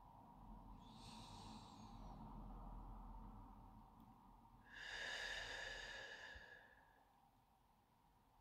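A woman's slow, deliberate deep breath: a faint inhale about a second in, then a longer, louder exhale from about five seconds in that lasts about two seconds.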